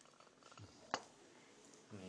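A quiet room with a single short clink of a cup on the table about a second in, as the cups are handled and set down.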